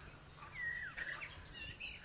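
A few faint bird chirps. One is a short whistled note about half a second in that slides down in pitch, followed by smaller chirps.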